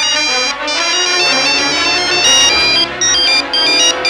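Mobile phone ringing with a melodic ringtone: a quick run of high electronic notes.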